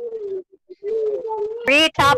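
A person's voice holding a long, steady hum at one pitch, broken once by a short gap, with speech starting again near the end.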